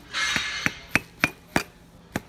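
Mallet repeatedly striking the edge of a thick laminated bulletproof-glass block, about three blows a second, hard knocks with a slight clink. The blows are driving a waterjet-cut piece out of the glass.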